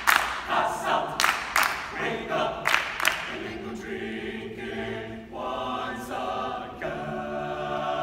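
Men's a cappella choir singing, with several sharp hand claps from the singers in the first three seconds. From about four seconds in the voices hold one long chord, the closing chord of the song.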